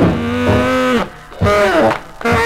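Tenor saxophone honking a low held note in a 1948 jump blues record played from a 78 rpm disc. The note bends down and breaks off about a second in, then a second honk comes in and falls away near the end.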